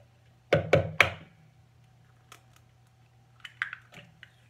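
Three sharp knocks in quick succession about half a second in, then a few lighter clicks and taps near the end: kitchen utensils knocking against a plastic measuring jug while mixing.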